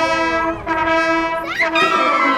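Wind band of clarinets, saxophones and brass holding one long sustained chord, with a short upward slide near the end before the music moves on.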